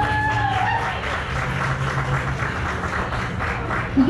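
Audience applauding at the end of a song, with a brief call from a voice near the start.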